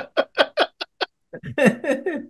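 A man laughing hard: a quick run of short, even bursts, about five a second, that breaks off about a second in, followed by another burst of laughter near the end.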